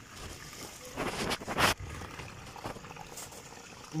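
A hand splashing in shallow water in a pit dug in wet sand: two short splashes close together about a second in, over a faint steady background.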